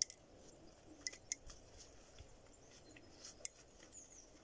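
A few faint, sharp clicks and ticks, irregularly spaced, over a quiet background.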